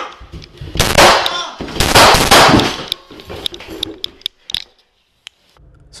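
Several handgun shots fired at close range indoors, coming in two quick bursts about a second apart, loud enough to overload the body-camera microphone. After them come a few scattered sharp clicks and knocks.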